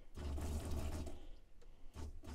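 12-volt Flojet diaphragm water pump starting up and running with a low, pulsing hum as the kitchen faucet is opened. A hiss comes with it for about the first second, then fades as water reaches the tap.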